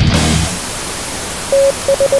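A thrash metal song cuts off about half a second in, giving way to steady TV-style static hiss. Near the end, short electronic beeps at a single pitch start cutting in through the static in an uneven pattern.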